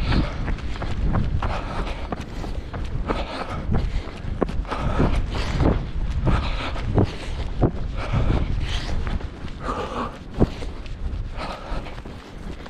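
A runner's footsteps on grass and a dirt path at a steady jogging pace, with a constant low wind rumble on the microphone.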